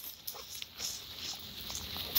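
Dogs moving about close by on dry leaf-covered ground, with a few faint, short sounds over a quiet background.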